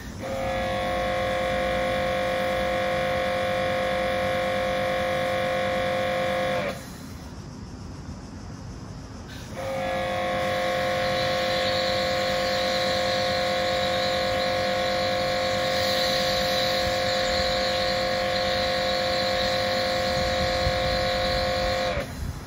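Kärcher K7 pressure washer motor and pump running with a steady whine while the gun sprays through a foam cannon. The motor stops about six and a half seconds in, as the trigger is let go, and starts again about three seconds later, with spray hiss added in the second run.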